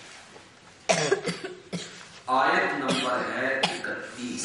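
Several coughs in quick succession about a second in, followed by a man's voice, drawn out and sustained for over a second.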